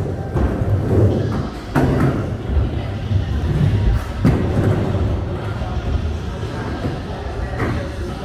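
Skateboard wheels rolling back and forth on a mini ramp with a steady low rumble. Sharp knocks of the board come about two seconds in, around four seconds, and near the end.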